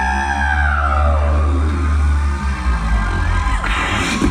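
Live beatboxing by a vocal percussionist: a deep bass note held for about two and a half seconds under a falling, siren-like vocal sweep, then beatboxed drum hits come back in near the end.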